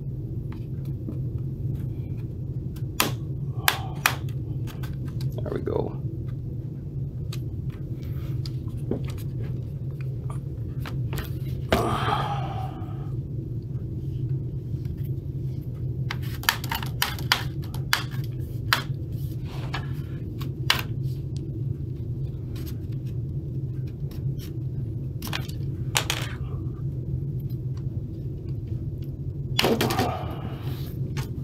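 Plastic snap clips of a Lenovo ThinkPad T15's bottom cover clicking loose as a plastic pry tool is worked along the edge: scattered sharp clicks and snaps, bunched together about midway, over a steady low hum.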